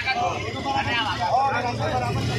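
Motorcycle engines idling steadily under loud voices from a crowd.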